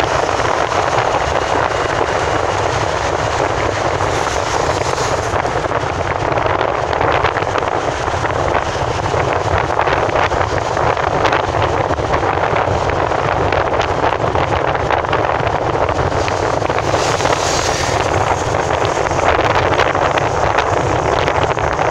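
Steady rush of road and wind noise inside a car's cabin while driving at speed along a highway.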